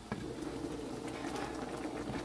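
Thick coconut milk boiling around cassava chunks in a lidded stainless pan, bubbling steadily; a light click just after the start.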